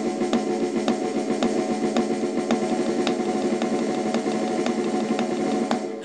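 Wooden drumsticks playing a fast, even single stroke roll on a drum practice pad, grouped in sextuplets with an accent marking the pulse about twice a second, so the roll sounds like a little heartbeat. It stops near the end.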